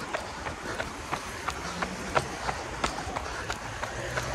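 A runner's footfalls on pavement at a fast tempo pace of about 3:50 per kilometre: short, evenly spaced steps, about three a second.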